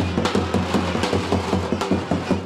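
Turkish davul and zurna music: a large double-headed drum beating a quick, steady rhythm under a reedy, wavering wind-instrument melody.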